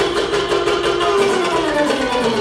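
Live wedding-band music with a steady, quick beat and a held melody note that slides slowly downward.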